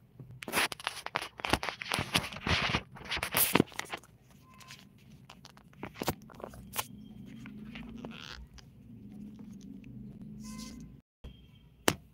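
Handling noise from the recording phone being picked up and moved: rubbing, crackling and sharp knocks, loudest over the first few seconds, then softer scattered clicks. The sound cuts out completely for a moment near the end, followed by one sharp knock.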